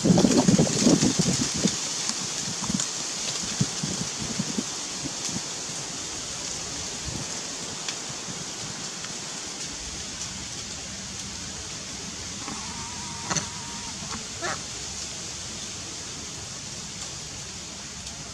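Steady outdoor background hiss, with a burst of rustling and soft knocks in the first couple of seconds and a brief short squeak or call about thirteen seconds in.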